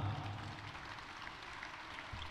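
Scattered audience applause in a hall, fading after the first second.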